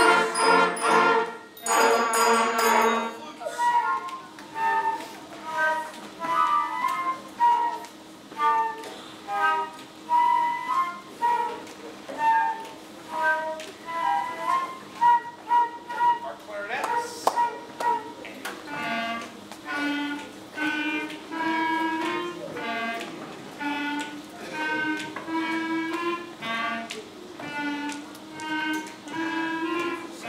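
Elementary school concert band ending a phrase together, then its sections playing the melody in turn: a thin line of flutes from about three seconds in, with clarinets taking over in a lower register a little past the middle.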